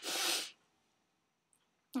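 A woman sneezing once: a single short, breathy burst lasting about half a second. It comes from allergies that she calls really bad.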